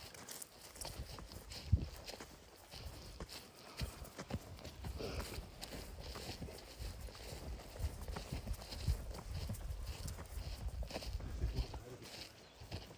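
Footsteps walking over grass: a run of soft, irregular thuds from people walking at a steady pace.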